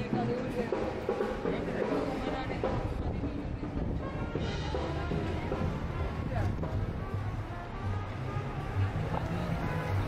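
A street band's live music playing, with a bass line carrying under it, mixed with indistinct voices of people talking.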